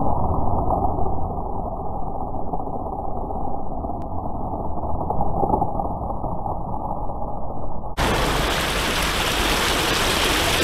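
A steady, muffled rumbling noise, then an abrupt change about eight seconds in to the steady rushing of water gushing from a culvert pipe into a creek.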